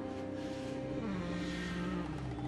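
Background music of sustained, held notes with low chords underneath, the harmony moving to a lower note about a second in.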